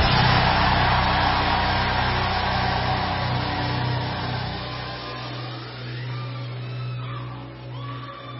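Church congregation shouting and cheering in response to a prayer, the noise fading over the first few seconds, over a sustained church keyboard chord held underneath.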